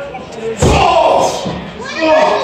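A single heavy slam of a wrestler's body thrown down outside the ring, about half a second in, followed at once by a voice calling out.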